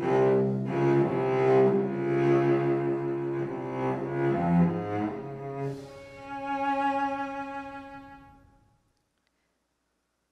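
Cello playing a short passage of notes, then a long held note that fades out about nine seconds in, leaving silence. The passage shows Pythagorean B-sharps played 24 cents higher than C natural.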